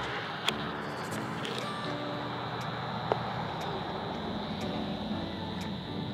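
Steady car cabin noise with a low rumble, and two light clicks, one about half a second in and one about three seconds in.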